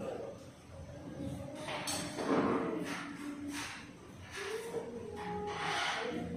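Indistinct voices of people talking in a room, with no words that can be made out.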